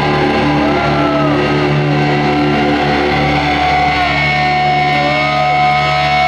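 A live metal band's distorted electric guitars and bass holding a steady, ringing chord through the PA, loud and unbroken, with short gliding high tones sliding over it.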